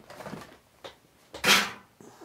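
Hands handling a small diecast model car and its packaging on a tabletop: a few soft clicks and light knocks, then one louder brief rustle or scrape about one and a half seconds in.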